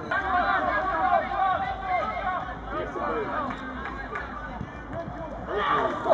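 Indistinct, overlapping voices of footballers and spectators calling and chatting. The voices are busiest in the first couple of seconds, with a louder call just before the end.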